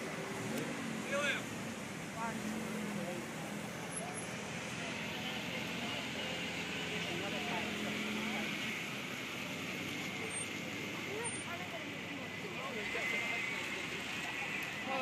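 Steady street and traffic noise with faint voices of bystanders talking.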